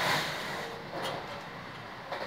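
Steady running noise inside a moving train car, a rumble and hiss without distinct events.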